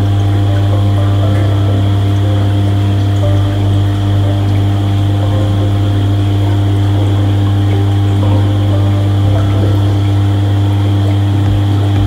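Aquarium air pumps running, a loud, steady low hum, with water bubbling from an air-driven sponge filter in the tank.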